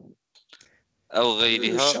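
A man speaking, after a short pause holding a few faint clicks.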